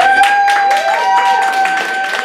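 Audience clapping, with one long, steady held whoop over the claps.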